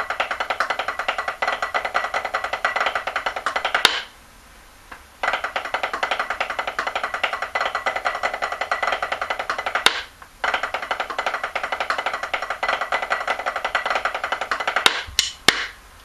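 Snare drum played with sticks in a rudimental backsticking passage in 3/4: three runs of fast, even strokes, each a few seconds long and separated by short pauses, then a few single hits near the end.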